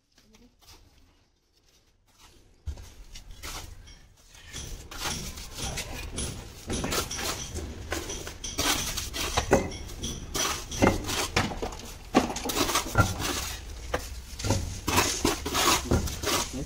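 Steel masonry trowels scraping and tapping wet cement-sand mortar along the top of a brick wall, with bricks being set down into the mortar. After a near-quiet start, irregular scrapes and clinks begin about three seconds in and grow louder.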